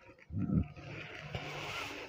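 A brief low voice sound, then lightweight saree fabric rustling as it is unfolded and spread out, lasting about a second and a half.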